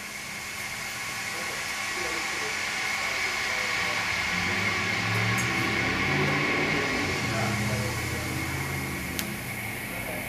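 Live experimental electronic ambient music: a continuous noisy wash with a steady high band, under low droning tones that swell through the middle and ease toward the end. A single faint tick comes near the end.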